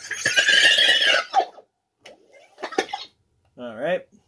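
Sony reel-to-reel tape recorder being switched by hand, giving a loud, high rushing burst about a second long. Short voice sounds follow near the end.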